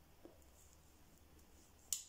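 Near silence with a faint tick early on and one sharp click near the end.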